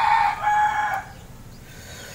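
A rooster crowing: one long call that ends about a second in.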